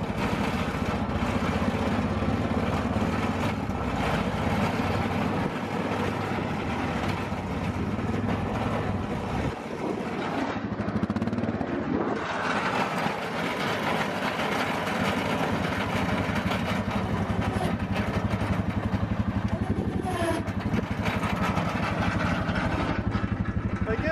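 Four-wheeler (ATV) engine running steadily in low range while pushing a snow plow blade, its low drone easing for a moment about ten seconds in.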